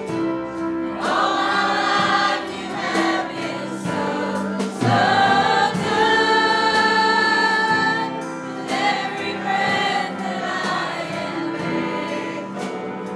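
Church choir singing a gospel song with acoustic guitar and piano accompaniment, swelling into long held notes about halfway through.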